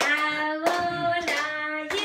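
Voices singing a song with steady rhythmic hand claps, the claps a little over half a second apart.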